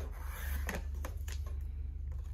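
Cutting head of a Westcott paper trimmer sliding along its rail and slicing paper: a rubbing scrape with a few light clicks around the middle, over a steady low hum.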